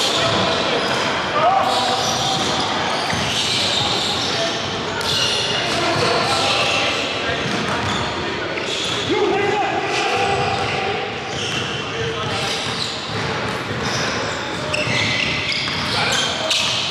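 Live sound of a basketball pickup game on a hardwood court: a ball bouncing, short high-pitched sneaker squeaks, and players' voices calling out, all echoing in a large gym.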